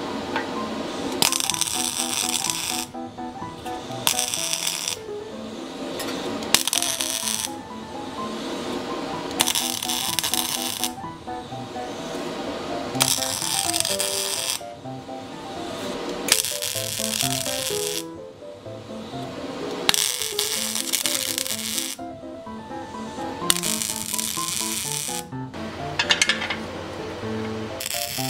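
Background music with a stepping melody, over which steel is being arc-welded in short runs. About eight separate bursts of crackling weld noise, each a second or two long, come with pauses of about a second between them.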